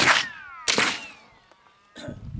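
Two shots from a suppressed FN15 Tactical rifle in .300 Blackout, under a second apart, with a falling whine trailing the first shot.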